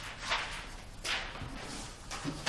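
Paper being handled and shuffled on a table: two brief swishes of rustling paper.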